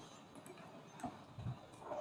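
Faint computer keyboard keystrokes: a few separate key clicks while a word is typed.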